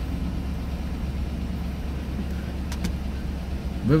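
Car engine idling steadily, heard from inside the cabin as a low even hum, with a couple of faint clicks about three seconds in.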